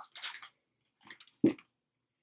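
Items being rummaged inside a handbag: a few brief, faint rustles, then a short, duller sound about a second and a half in.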